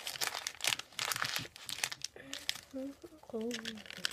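A sheet of paper being folded and creased by hand into a paper fortune teller: a quick run of paper rustles through the first two seconds, then softer handling.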